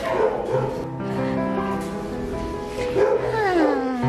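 Background music with held notes under a dog's vocalizing. Near the end comes one long dog cry sliding down in pitch.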